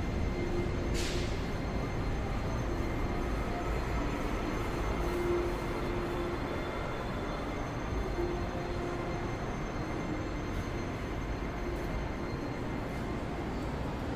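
Steady low rumbling ambient noise of a covered shopping arcade, with faint on-and-off tones and a brief hiss about a second in.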